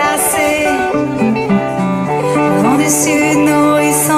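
Live solo performance: a woman singing over her own electric guitar, sustained notes ringing at a steady level.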